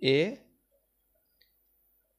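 A voice saying a short "a", then near silence broken by two faint ticks about a second apart.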